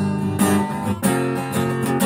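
Acoustic guitar strumming chords with no singing. The chord changes about halfway through.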